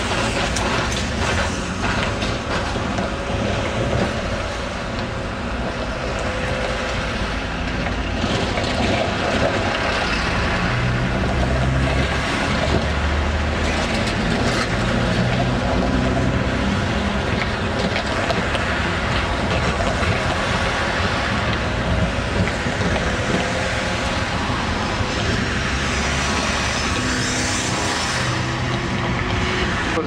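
Busy street traffic: cars and a van driving past close by, engines and tyres running steadily, with trams rolling slowly through the junction behind them.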